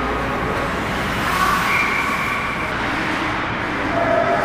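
Steady ice rink noise during a hockey game: skates on the ice and the arena's background hum, with no distinct impact.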